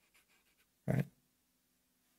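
Felt-tip marker faintly scratching on paper as figures are written, then a short spoken 'all right?' about a second in; otherwise quiet with a faint steady hum.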